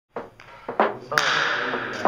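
Hockey stick blade knocking a puck about on a bare concrete floor: a few sharp clacks, the loudest about a second in.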